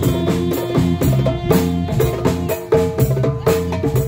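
Live band playing a fast, drum-driven Moroccan-style piece: hand-struck djembe and drum kit with violin and bass guitar, the drum strokes coming thick and fast over the held melody and bass notes.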